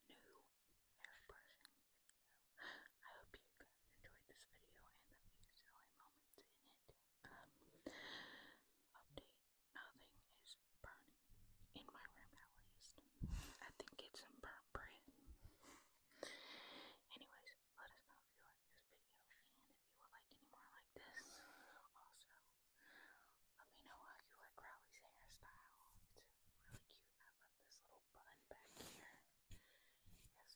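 Soft, faint whispering in short phrases with pauses between them.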